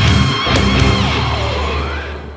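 Heavy metal song with a distorted Warwick electric bass and guitars. The riff stops about a second in, and a low bass note rings on and fades.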